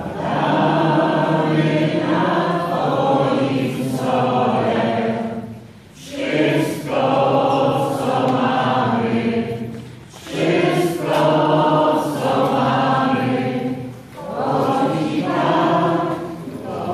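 Many voices singing a hymn together, in phrases of a few seconds broken by short pauses for breath.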